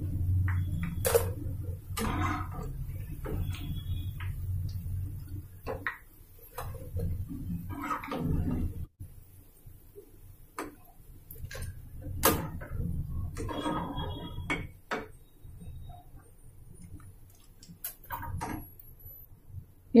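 A perforated steel slotted spoon scraping and clinking against a non-stick kadai as fried potato pakoras are scooped out of the oil, with a handful of sharp metal taps spread through.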